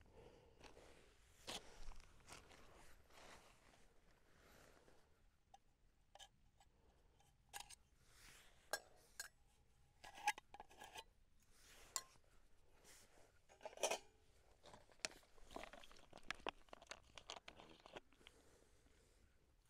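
Faint, scattered clicks, taps and rustles of camping cook gear being handled: a nylon stuff sack and small parts of a spirit-burner stove and its fuel bottle.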